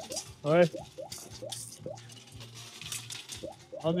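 Coins clinking one after another as they are dropped into a coin pusher arcade machine, a quiet run of short taps two or three a second, over faint fairground music.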